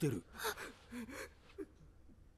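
Soft anime dialogue in Japanese, a gasp at the start followed by a short spoken line, falling quiet after about a second and a half.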